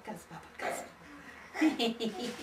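Short bursts of voice from a woman and babies: a brief sound about half a second in, then a louder, higher one near the end.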